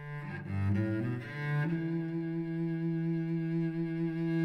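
Bowed cello music, the instrumental opening of a song: a few shifting notes, then a long held note from about a second and a half in.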